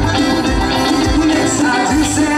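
Live band music at full loudness with a steady beat: electric guitar, keyboard and conga drums, with a woman singing into a microphone.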